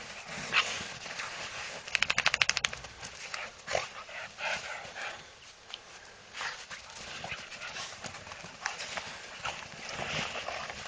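Footsteps and dogs' paws crunching through snow in an uneven scatter of crunches and light thumps, with a quick rattling run of about a dozen clicks around two seconds in.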